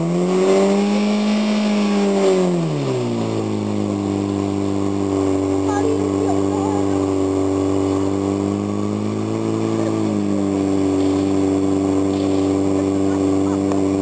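Portable fire pump engine running at high revs, then dropping to a steady lower speed about three seconds in, with a brief speed-up about nine seconds in, while it pumps water through the laid-out hose lines.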